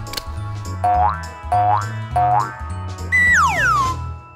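Playful background music with a steady, repeating bass line, overlaid with cartoon sound effects: three short rising glides in quick succession, then a long falling glide near the end.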